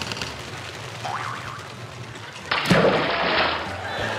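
Comic sound effects for a pretend flea's high dive into a cup of water: a short whistle rising in pitch, then about two and a half seconds in a sudden loud splash, the loudest sound here, which soon gives way to a lower, steady wash of noise.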